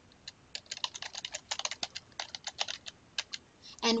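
Typing on a computer keyboard: a quick, uneven run of keystrokes that stops shortly before the end.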